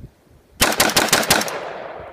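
LWRC M6A2 rifle, fitted with a new spiral fluted barrel and adjustable gas block, firing a rapid burst of about eight shots in under a second, a little past halfway in. The echo dies away after the burst.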